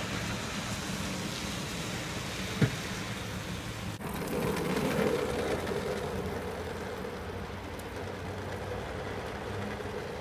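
Wet parking-lot ambience: a steady wash of traffic and wet-pavement noise, with a single sharp click about two and a half seconds in. From about four seconds in a low steady hum stands out.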